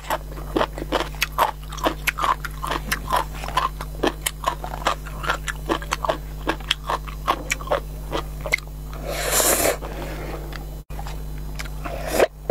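Close-miked mouth sounds of eating instant noodles: wet chewing and lip smacks, about two to three a second, then a longer noisy slurp about nine seconds in.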